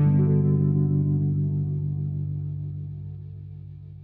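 The song's final chord, struck on an electric keyboard and left to ring out, fading slowly away.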